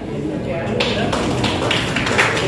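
A few people clapping in a steady rhythm, about three claps a second, starting just under a second in, over the murmur of voices in a crowded hall.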